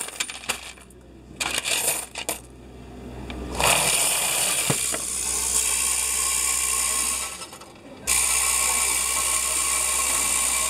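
A coin-counting machine running as loose coins are pushed by hand into its entry slot. At first the coins clink in scattered bursts. From about three and a half seconds in there is a steady rattling rush of coins through the counter, which drops off briefly about seven and a half seconds in and then resumes.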